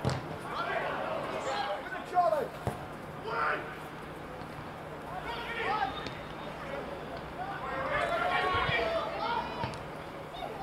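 Men's voices shouting and calling across an open floodlit football pitch, in short bursts with pauses between them, and a single dull thud a little under three seconds in.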